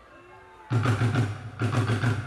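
A live band on stage comes in loudly after a short lull less than a second in, with drums and a heavy bass line, briefly dropping away and hitting again.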